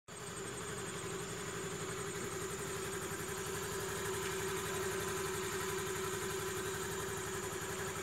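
A steady engine-like running sound with fast, even low pulsing, like an idling engine, and a steady high tone above it.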